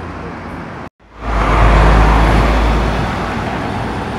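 Street traffic with a car passing, then, after a sudden break about a second in, a heavy lorry's diesel engine going close past with a deep rumble that rises quickly and fades slowly.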